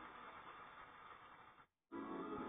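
Near silence: the television's sound fades out to a faint hiss, and drops to total silence briefly near the end.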